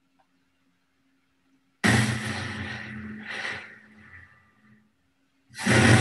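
Movement-triggered sounds from a dancer's wrist and ankle motion-sensing wearables, played back from a video over a computer: one long sound starting abruptly about two seconds in and fading away over about three seconds, then a short burst near the end.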